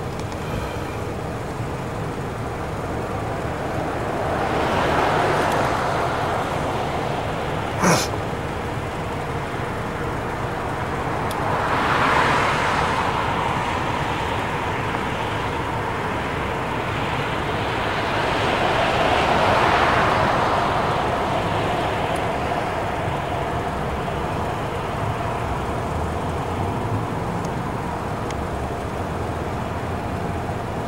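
Street traffic: a steady background rumble with three vehicles passing, each swelling and fading, about 5, 12 and 20 seconds in. There is a single sharp click about 8 seconds in.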